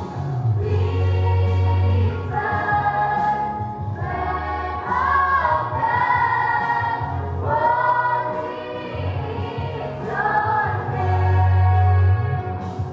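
Music with a choir singing over a deep, pulsing bass line.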